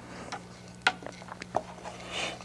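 A few light clicks and taps of paintbrushes and tools being handled at an easel tray, the clearest just under a second in, over a steady low hum.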